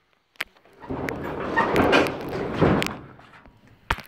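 Rustling and knocking that lasts about two seconds, with a sharp click about half a second in and another near the end.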